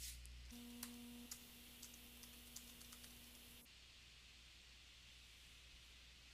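Near silence: room tone with a few faint clicks and a faint steady hum that stops about three and a half seconds in.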